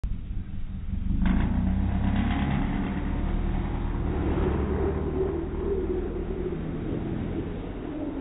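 Toyota 86-type sports coupe's engine accelerating hard about a second in as the car pulls away, then running on at speed with its pitch rising a little.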